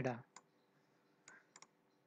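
A few faint computer mouse clicks, about four, the last two in quick succession, after a voice trails off at the start.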